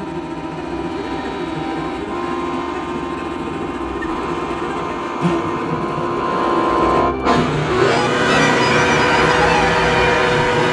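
Contemporary chamber music for alto saxophone, cello, accordion and electronics: sustained held tones that slowly grow louder, broken off suddenly for a moment about seven seconds in, then a denser, louder texture.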